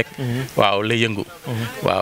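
A man's voice laughing and talking into a close microphone.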